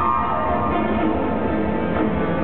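A live orchestra playing dance music for a ball's opening, led by strings, with held chords and no breaks.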